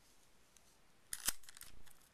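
Clear Scotch tape being handled against paper: a short crackly peeling rustle about a second in, with one sharp click, lasting under a second.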